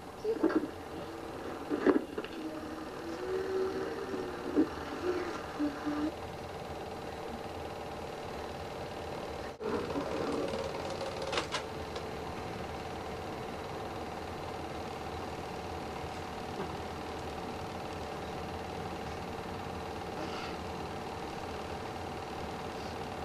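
8mm home-movie projector running: a steady mechanical whir with fixed hum tones. A few quiet words of a voice come in over it in the first few seconds.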